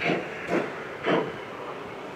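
Steam chuffs from a Gauge 1 model steam locomotive's sound unit: three short hissing puffs about half a second apart over a steady background hiss.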